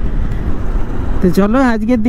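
Wind and road noise on a moving motorcycle, a steady low rush with the bike's running underneath. A man's voice starts talking about a second and a half in.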